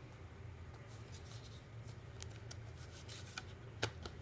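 Faint handling of a plastic Blu-ray case and its cardboard slipcover: rubbing and rustling as the case is slid out of the sleeve, with scattered light clicks and one sharper tap near the end.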